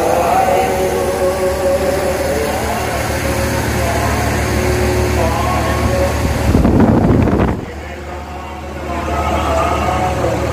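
A man's voice reciting a prayer over a loudspeaker, with a steady low rumble underneath. About two-thirds of the way through, a brief louder surge of rumble covers it, and then the level drops for about a second.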